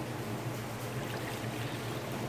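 Celery juice pouring from a plastic collection container into a glass measuring cup through a strainer, over a steady low hum.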